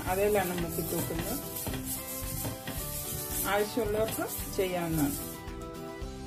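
Oil sizzling on a hot flat tawa as a halved onion on a fork is rubbed across it to grease the pan; the sizzle cuts off about five seconds in. Background music plays underneath.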